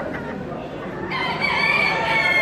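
A rooster crowing, starting about a second in, over the chatter of a crowd.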